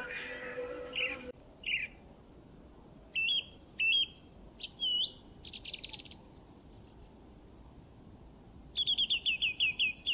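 Birds chirping: short separate high calls about once a second, then near the end a rapid trill of repeated falling notes.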